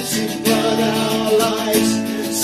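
Acoustic guitar strummed steadily while a man sings a hymn, holding a long note.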